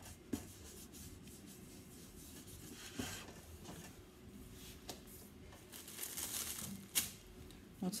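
Faint rubbing and rustling of hands smoothing sugar paste over a hard plastic mould, with a few light clicks as the mould is handled.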